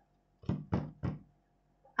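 Three quick knocks on the desk under the workbook, evenly spaced about a third of a second apart.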